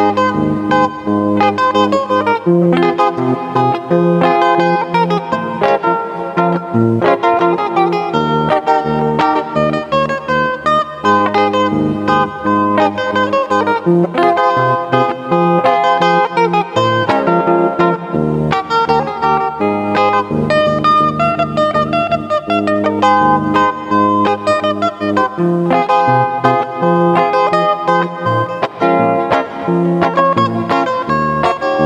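Solid-body electric guitar played fingerstyle: a melody of picked notes over low bass notes, running on without a break.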